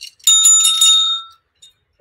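A bell sound effect rung rapidly about five times, its ring dying away about a second later. It marks the start of a new quiz round.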